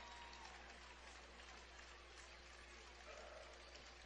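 Near silence: a faint steady hiss with a low hum beneath it.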